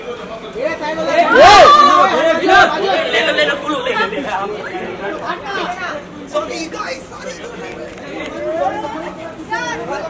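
Overlapping voices of a crowd talking and calling out at once, loudest a second or two in.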